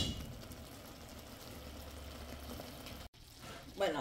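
Wings in buffalo-honey butter sauce simmering in a stainless steel pan, a faint, even sizzle that cuts out briefly about three seconds in.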